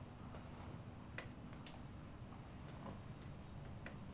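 Hands kneading a bare upper arm in a massage: a few faint, sharp clicks of skin and hand contact at irregular intervals, over a low, steady room hum.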